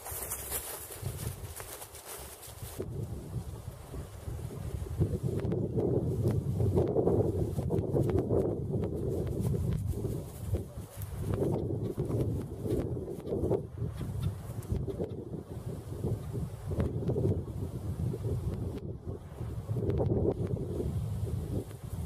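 Wind buffeting the camera's microphone: a low rumble that swells and fades in uneven gusts, building from a few seconds in.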